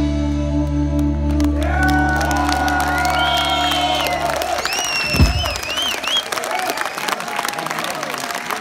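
A live rock band holds its closing chord, bass and electric guitar sustained, while voices call out over it; the chord stops about four seconds in and a last low thump lands about a second later. The audience then applauds and cheers.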